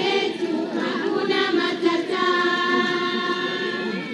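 A group of voices singing together in chorus, with long held notes in the second half.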